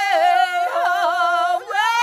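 Athabascan warrior honor song sung unaccompanied by a few women's and men's voices together, holding long high notes that bend in pitch, with a brief break for breath near the end before the voices come back in.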